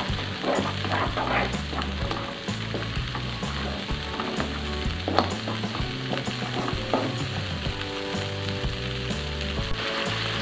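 Blended chili and shallot spice paste sizzling in hot oil in a wok while a spatula stirs and scrapes it steadily around the pan. It is being sautéed until fully cooked.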